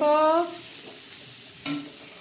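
Pumpkin pieces sizzling as they fry in oil in a metal karahi on a gas stove, with a spatula stirring them. A voice trails off in the first half second.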